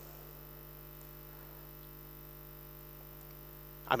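Steady electrical mains hum, a stack of even unchanging tones, with nothing else over it.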